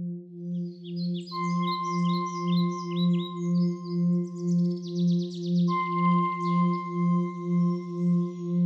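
Calm ambient background music: a low singing-bowl-like drone that pulses about twice a second, a held high tone that enters about a second in and is struck again near six seconds, and quick bird-like chirps above it.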